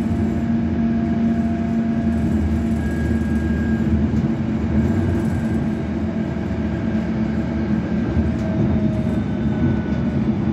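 Inside a London Underground S8 Stock train running at speed: a steady, even rumble of wheels on track. Faint thin whining tones sit above it and drift slightly in pitch.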